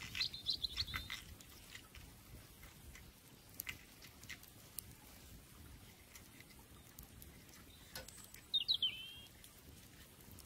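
A small bird chirping: a quick run of high chirps at the start and another run of downward-sliding chirps near the end, with a few faint clicks in between.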